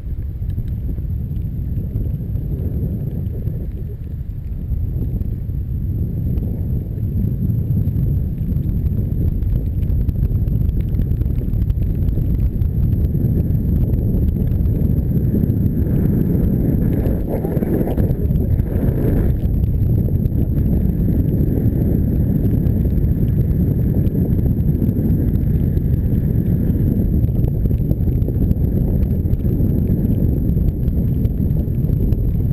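Wind buffeting the microphone of a camera on a moving bicycle, mixed with the rumble of tyres rolling over wet road; it gets louder from about four seconds in.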